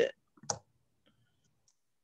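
A single short, sharp click about half a second in.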